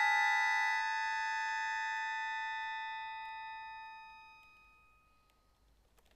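Accordion holding a sustained chord in a long diminuendo; the notes drop out one by one and the sound fades to near silence about five seconds in.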